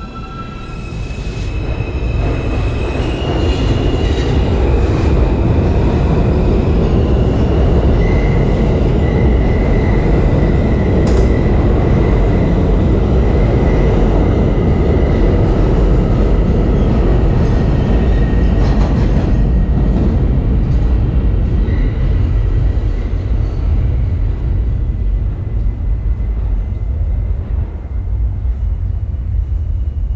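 A New York City subway J train pulling out of the station. Its motors whine in rising steps as it gets going, then the wheels on the rails give a loud, steady rumble as the cars pass, with a thin high squeal over it for a stretch in the middle. The rumble fades slowly toward the end.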